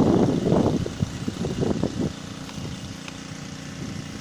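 About two seconds of rustling and handling noise on the phone microphone as the plastic fungicide packet is moved away, then a steady low hum like a running engine in the background.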